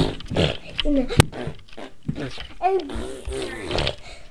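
A young girl's voice making wordless, playful vocal noises close to the camera's microphone, with a single sharp click about a second in.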